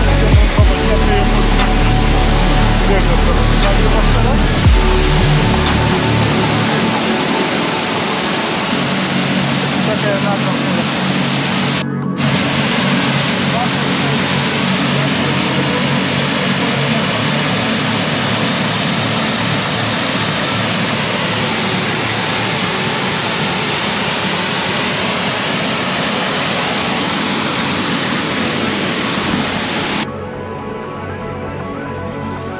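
Background music with a heavy low beat, then from about six seconds in a steady rushing of a mountain stream under the music.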